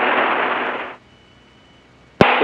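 Steady hiss on an aircraft's radio/intercom audio, cutting off suddenly about a second in and leaving a much quieter background with a faint thin high tone.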